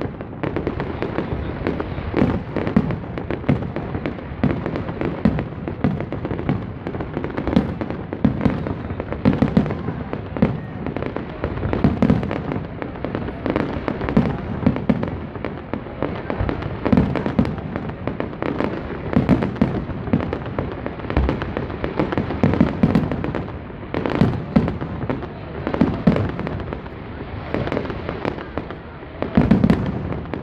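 Fireworks display: aerial shells bursting one after another in a dense, uneven string of bangs that never lets up.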